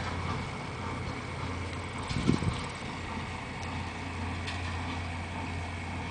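Steady low machine hum with a thin high whine above it, and a single dull knock a little over two seconds in.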